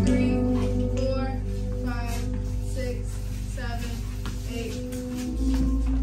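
Recorded song playing, with held low notes and a voice over it.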